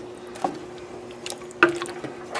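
A wooden spoon stirring thick chili in a large metal pot: soft wet squelches and a few light knocks of the spoon against the pot, the sharpest near the end. A steady hum runs underneath.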